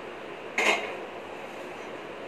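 A flat metal tawa set down on a gas stove's pan support: one metallic clank about half a second in, ringing briefly.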